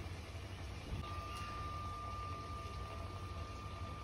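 Faint, steady low hum of background noise, with a thin, steady high whine that comes back about a second in, and one soft tap.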